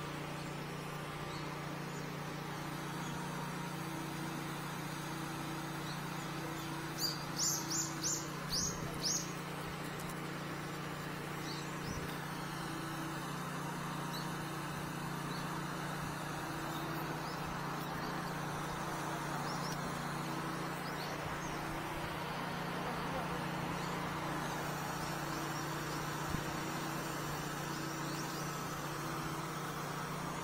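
Steady low engine hum running throughout, with a short run of high bird chirps about seven to nine seconds in.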